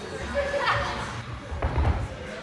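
A few dull thuds of bare feet striking the gym floor near the end as a tricking move is launched, with voices in the background.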